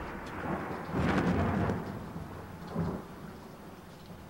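Rain-and-thunder sound effect: a hiss of rain with a thunder rumble swelling about a second in and a smaller one near three seconds, fading away.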